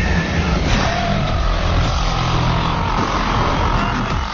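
Loud film sound effects of Electro's electric power surging and a car being hurled: a continuous deep rumble with crackling electric discharge and a sustained whine running through it.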